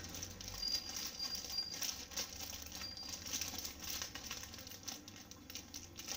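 Thin clear plastic sheet crinkling and rustling as it is handled, with soft irregular pats as a ball of egg cutlet mixture is pressed into shape by hand.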